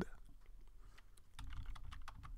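Faint keystrokes on a computer keyboard: a few irregular clicks as a word is typed.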